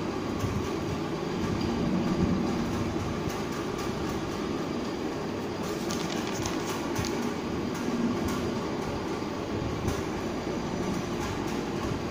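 Steady low rumbling background noise with a few faint scattered clicks.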